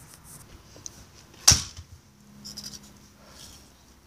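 Handling noise from the recording phone: one sharp knock about one and a half seconds in, then faint scattered clicks and rustles.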